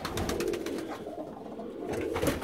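Domestic flight pigeons cooing in the loft, with a few light clicks near the start.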